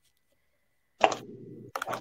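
About a second of near silence, then a sudden pop, with a couple of sharp clicks near the end over a low, steady background noise.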